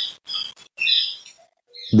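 A bird chirping: a few short, high chirps in the first second, then a pause.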